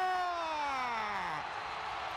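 Hockey play-by-play announcer's drawn-out goal call: one long held shout that slides down in pitch and ends about a second and a half in, giving way to an arena crowd cheering.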